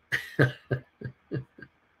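A man laughing in a string of about six short, breathy bursts in quick succession, growing fainter.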